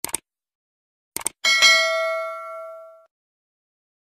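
Subscribe-button sound effect: two quick mouse clicks, two more about a second later, then a notification bell ding that rings and fades out over about a second and a half.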